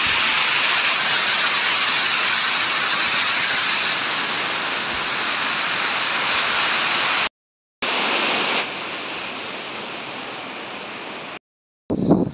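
Waterfall rushing over mossy rocks: a steady, loud rush of falling water, cut off twice by short silences.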